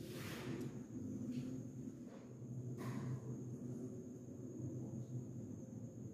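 Faint scraping of a paintbrush mixing acrylic paint in a plastic palette, with a soft hiss at the start and a light tap about three seconds in, over a low steady room hum.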